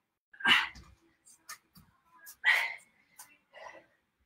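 Pet cat meowing, two short calls about two seconds apart, with a few fainter sounds between them.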